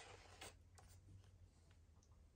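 Faint rustle of a paper page of a hardcover picture book being turned by hand, about half a second in.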